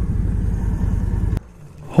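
2008 Victory Vision Tour's V-twin running at road speed, a steady low rumble mixed with road noise, cut off abruptly about a second and a half in.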